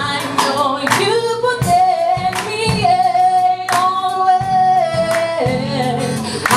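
A woman singing a gospel song live into a microphone, over a band with keyboard and guitar. In the middle she holds one high note for about three and a half seconds.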